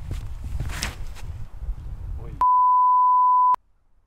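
A censor bleep: a loud, steady, pure beep lasting about a second, starting a little past the middle, with all other sound cut out around it and briefly after it. It most likely covers a curse at a drive that slipped out of the hand. Before it there is wind rumble on the microphone and the scuffs of the thrower's run-up and release.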